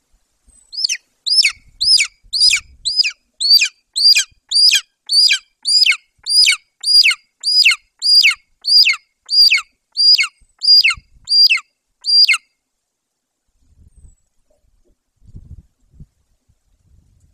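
Golden eagle calling close to the microphone: a series of about twenty high, down-slurred yelps, about two a second, that then stops.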